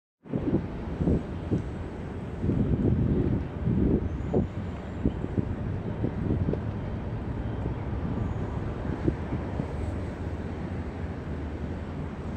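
Wind buffeting a phone's microphone in irregular low gusts over a steady low rumble. It is gustiest in the first few seconds, then settles into a steadier rush.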